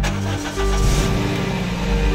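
Car engine starting with a turn of the ignition key: it catches almost at once and then runs steadily, under background music.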